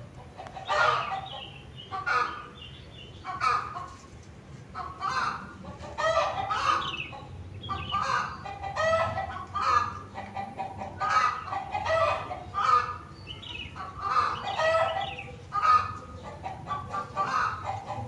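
Short, repeated clucking calls like a chicken's, coming at an uneven pace of about one or two a second.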